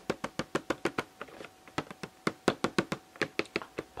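Fingertips tapping quickly on the clear plastic window of a Pokémon TCG Hoopa V collection box: a fast, uneven run of sharp taps, about seven a second.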